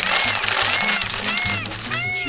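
Background music with a repeating rise-and-fall pitched figure, over a loud rustling of paper being shuffled on a desk that starts abruptly and fades out at the end.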